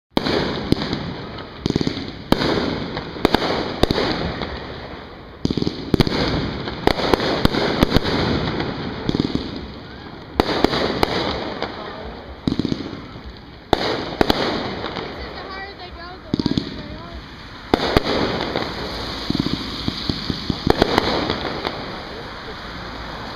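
Aerial firework shells bursting overhead: a long run of sharp bangs, often several in quick succession, each trailing off into rumbling noise.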